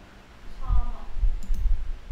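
A computer mouse clicking a few times about one and a half seconds in. Before it there is a faint murmured voice and a couple of low thuds.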